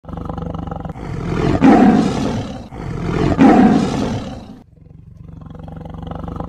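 Big-cat roar sound effect, heard twice, about a second in and again about three seconds in, each lasting under two seconds, over a low steady rumble that carries on after the roars fade.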